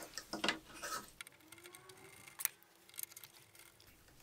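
Faint, scattered clicks and taps of a small bolt and the plastic cable drag chain being handled as the chain end is fitted to its bracket, with two sharper ticks about two and a half and three seconds in.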